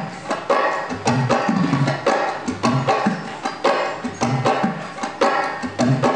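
Dangdut gendang, a two-headed barrel drum, played in a steady rhythm for a sound check: deep pitched strokes on the large head mixed with sharp slaps, about two main beats a second with quicker strokes between.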